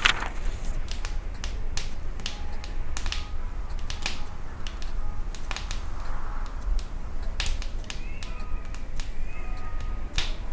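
Wood crackling in a wood-burning stove fire: irregular sharp pops and snaps, the loudest right at the start, over a steady low rumble.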